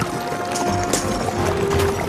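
Documentary background music: a few long held notes over light tapping percussion.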